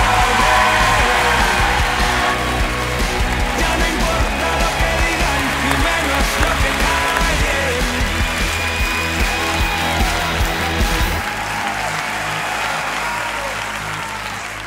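Audience applause over music with a steady bass line; the bass drops out about eleven seconds in, leaving the applause and lighter music.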